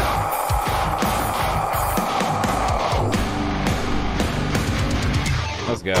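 Heavy metal song playing: distorted guitars chugging under pounding drums, with a brief drop-out just before the end.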